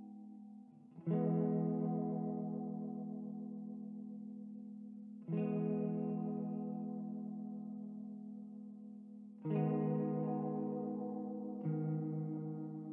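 Ambient music on a single clean guitar track through chorus and echo effects: slow chords struck about every four seconds, each left to ring out and fade.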